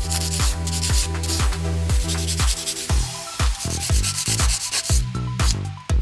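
A sanding sponge rubbing in quick back-and-forth strokes over a gel-polished nail, sanding through the cat-eye gel layers to blend the colours into a soft, feathered finish.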